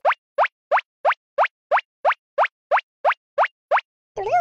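Cartoon sound effect: a short blip that sweeps quickly up in pitch, repeated twelve times at an even pace of about three a second.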